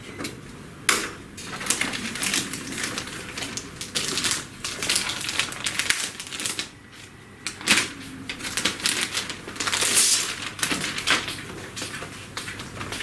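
A laptop's white protective plastic bag crinkling and rustling as it is handled, opened and the laptop pulled out, in irregular crackly bursts.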